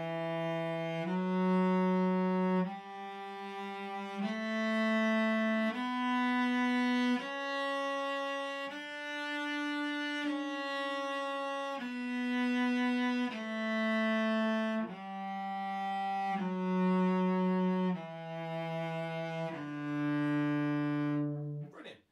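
Cello playing a one-octave D major scale up and back down on the D and A strings, one full-bow note per step, each held about a second and a half, with the top D played once.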